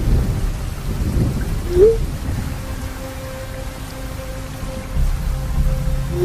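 Thunderstorm sound effect: thunder rumbling over steady rain, swelling at the start and again about five seconds in, under a low, steady ambient music drone. A short rising blip sounds about two seconds in.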